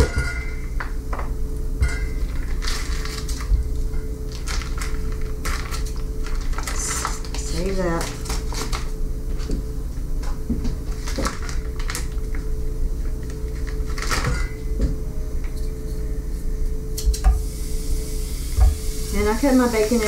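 Kitchen scissors snipping through a plastic-wrapped pack of raw bacon, with the plastic crinkling and scattered clicks and knocks of handling, over a steady low hum.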